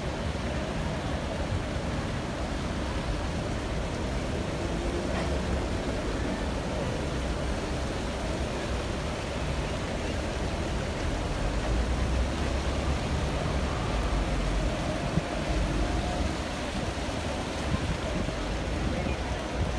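Steady outdoor city din of distant traffic, a continuous rumble that grows somewhat louder about two-thirds of the way through.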